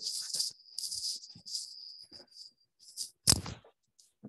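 Soft, irregular rustling and handling noise picked up by a computer microphone, with one sharper knock about three seconds in.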